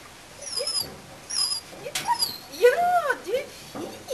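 A small dog whining: a few very high, short squeaks, then a run of rising-and-falling whines, the loudest about two and a half to three seconds in.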